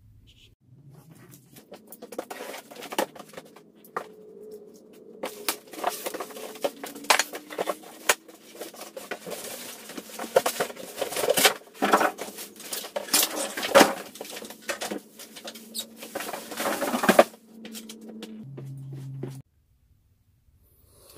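A cardboard box and styrofoam packing blocks being handled: irregular scraping, rustling and squeaking of foam against cardboard, with many sharp cracks and knocks, easing off near the end.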